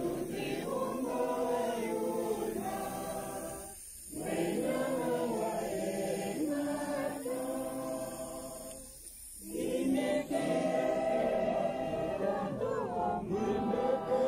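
A large group of people singing together unaccompanied, like a choir. The singing comes in long phrases with brief breaks about four and nine seconds in.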